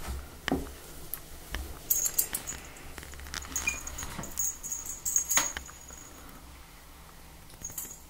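Scattered knocks and rustling as a pet cat is picked up and held, with a light metallic jingle about two seconds in and a longer one around five seconds.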